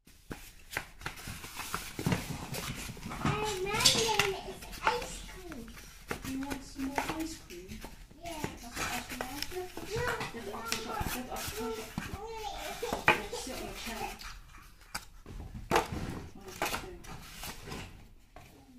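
Cardboard packaging and paper leaflets being handled and shuffled, with clicks and rustles throughout, while a child's voice babbles in the background.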